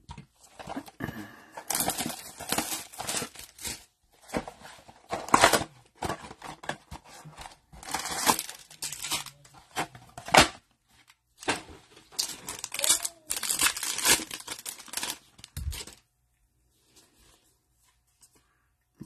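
Cellophane wrap, cardboard and foil card packs of a Panini Prizm blaster box being torn and crinkled open by hand: a long run of irregular ripping and crackling bursts that stops about two seconds before the end.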